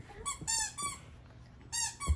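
Squeaky toy chicken for a dog being squeezed: a quick run of high-pitched squeaks in the first second, then another squeak near the end.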